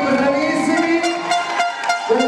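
A long, steady held note over the club's noise, with several hand claps from about a second in.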